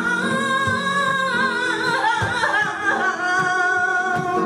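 A woman singing flamenco cante live, holding long notes that break into a wavering run of vocal ornaments about halfway through.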